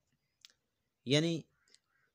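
Dead silence in a pause of the narration, broken by a single short click about half a second in; then a man says one word, with a faint tick just after.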